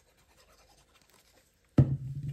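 Faint paper handling and small crackles as liquid glue is squeezed from a plastic squeeze bottle onto a paper strip. Near the end, a sudden short low-pitched hum.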